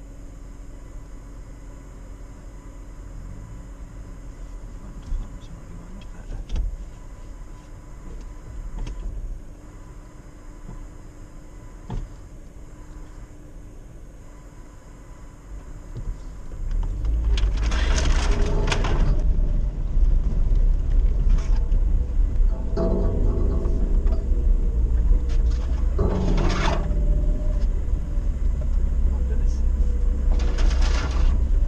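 Off-road 4x4 engine idling steadily, then about halfway through pulling away into a flooded ford: the engine rises to a heavy, loud rumble under load, with bursts of water rushing and splashing against the vehicle.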